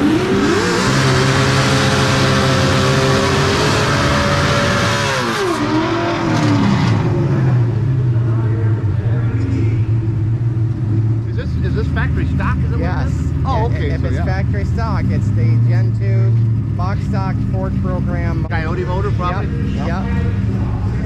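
A Coyote Stock drag-racing Fox-body Mustang's Ford Coyote 5.0 L V8 revs up and holds high revs for about five seconds under a loud hiss, then its revs drop away. Engines then idle in the background while voices carry over them.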